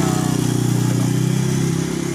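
A motorcycle engine idling steadily.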